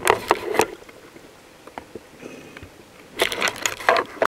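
Underwater recording from a camera just below the surface: sharp clicks and splashy crackle of water and handling around the camera housing, in a burst at the start and again for the last second, quieter in between.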